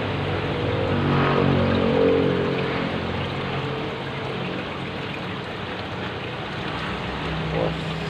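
Aquarium aeration bubbling steadily from an air stone, with a low droning hum that swells between about one and three seconds in.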